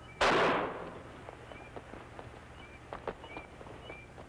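Starter pistol fired once to start a race: a single sharp crack with a short fading tail, followed by faint scattered taps.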